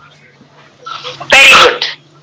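One short, loud vocal burst from a person about one and a half seconds in, over a faint steady low hum.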